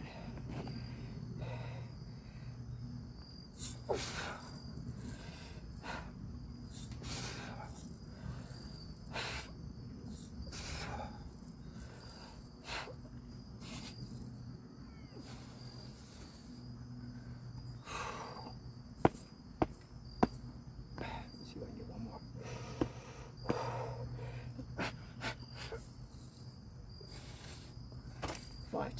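A man breathing hard in short, noisy exhalations every second or two while doing chin-ups, over a steady high chirring of crickets. Three sharp clicks come close together a little past the middle.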